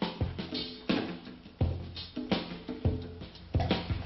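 Drum kit playing a steady groove: bass drum beats about every two-thirds of a second with snare and cymbal strokes between them, over a low steady tone.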